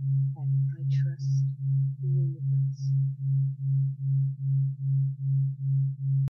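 Steady low sine tone of a binaural-beat track, swelling and fading evenly about twice a second. Faint whispered affirmations sit far beneath it in the first half.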